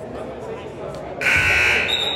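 A basketball scoreboard buzzer sounds once, loud, for under a second, starting a little past halfway, over the murmur of crowd voices in the gym.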